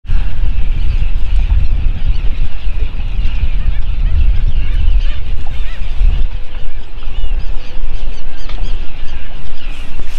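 Wind rumbling steadily on the microphone, with many short bird calls scattered through it.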